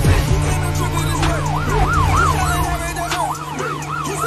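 Police car siren in a fast yelp, rising and falling about three times a second, over music with a steady low bass.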